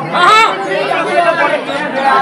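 A loud voice calling out over people chattering.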